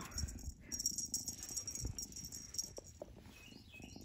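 Faint rustling and soft bumps as a feather-and-ribbon wand toy is swished over a plush blanket with a kitten playing under it. Faint, short, high chirps repeat a few times a second near the end.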